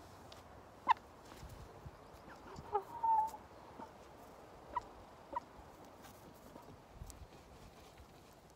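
A brown hen giving a few short, sharp calls while being held: one about a second in, a cluster with one longer note around three seconds, and two more near five seconds.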